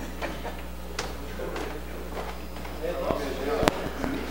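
Room tone of a large hall through an open microphone: a steady low hum under faint murmured voices, with a small click about a second in and a sharper click near the end.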